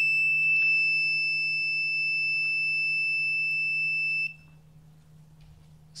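Electronic buzzer sounding one steady, high-pitched alarm tone that cuts off suddenly about four seconds in. It is the crash alert the circuit gives when vertical acceleration passes its 1.5 G threshold.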